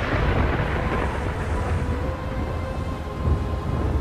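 Thunderstorm sound: thunder rumbling low under a steady hiss of rain, with a faint held tone above it.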